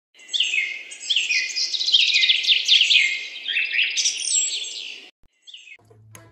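Cockatiel chirping: a rapid, busy run of short falling chirps that stops about five seconds in, followed by one brief chirp just before the end.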